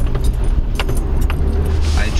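Car driving slowly, heard from inside the cabin: a steady low rumble of engine and tyres, with a few light clicks and rattles.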